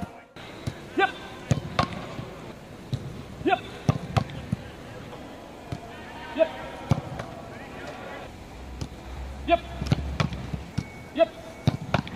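A football being struck again and again during a goalkeeper reaction drill: sharp thuds of boots kicking the ball, the ball hitting gloves and bouncing on turf, coming at irregular intervals.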